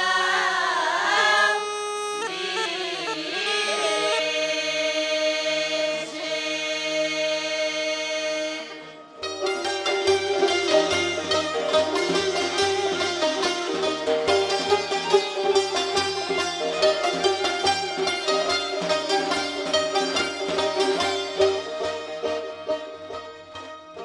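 Folk singing with long held, slowly bending notes, which breaks off about nine seconds in. It gives way to an Iranian traditional ensemble of plucked lutes playing a lively, rapidly strummed piece.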